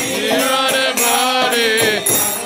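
Devotional kirtan chanting: a voice sings one long, arching phrase of a mantra over light jingling percussion.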